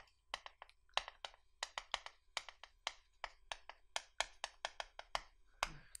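Chalk writing on a chalkboard: a quick, irregular run of sharp taps and short strokes, about five a second.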